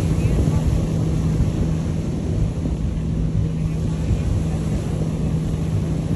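Wind buffeting the microphone, with a steady low drone from a small motorboat's engine running past.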